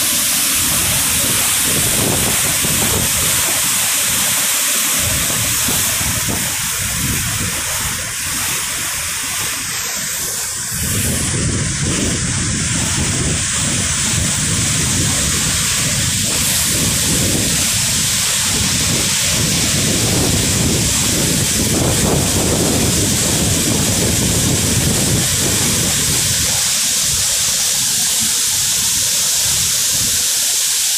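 Loud, steady rushing of a waterfall's churning whitewater, a dense hiss with a deep rumble beneath it, dipping a little for a few seconds about a third of the way in.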